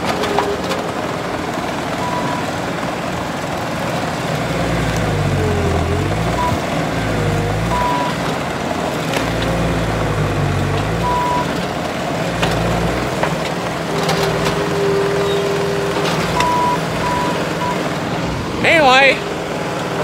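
Skid steer loader's diesel engine running under load as its grapple bucket digs out a post stump, the engine note rising and falling several times with the work. Short high beeps sound now and then.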